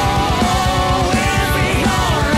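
Progressive rock band playing an instrumental passage: dense, fast drumming under a lead melody that slides up and down in pitch.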